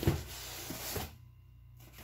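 Cardboard shipping box handled on a table: a knock as it is set down or gripped at the start, then about a second of cardboard scraping and rustling as it is moved.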